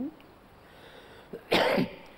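A single short cough about one and a half seconds in, after a brief pause.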